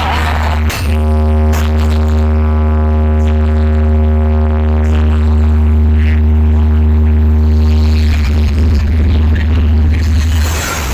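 Very loud electronic music through a street DJ sound rig's speaker stacks, with a constant heavy bass. About a second in, a long held synth tone comes in over the bass and lasts some seven seconds before giving way to busier music near the end.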